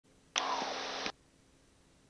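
A short burst of radio static, under a second long, that cuts in and out abruptly with a faint falling tone inside it.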